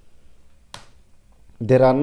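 A single sharp computer keyboard keystroke, the Enter key pressed to run a compile command, in a quiet small room.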